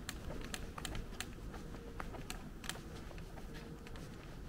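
Footsteps and handling noise from someone walking on brick paving while holding a camera: irregular sharp clicks and taps, about two or three a second, over a low rumble.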